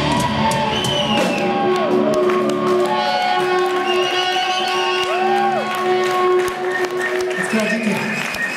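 A rock band's final chord ringing out as the drums stop, with audience shouting and whooping over the held notes.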